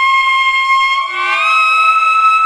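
Saxophone holding a long high note alone, without accompaniment, then sliding up about a second in to a higher note and holding it.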